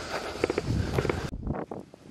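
Footsteps and rustling on dry grass and stony ground, with some low wind rumble on the microphone. The sound cuts off suddenly a little over a second in, leaving quieter ground noise with a few faint clicks.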